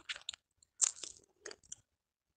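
A handful of faint, short clicks and smacks, scattered across the pause with no steady sound between them.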